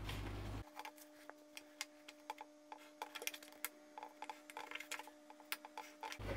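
Faint, scattered light clicks and taps of a scratch awl and a small steel ruler on leather while stitching lines are marked, over a faint steady hum.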